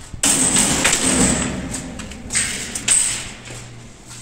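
A steel bed frame clattering and scraping as it is carried, with metal knocks: a noisy burst of rattling just after the start and another near the three-second mark ending in a sharp knock.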